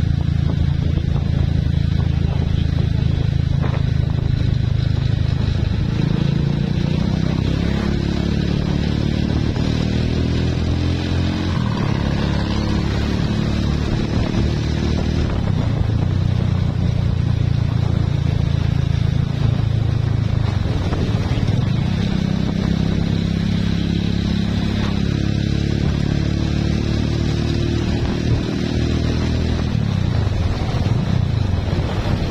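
Motorcycle running at road speed, with steady wind and road noise.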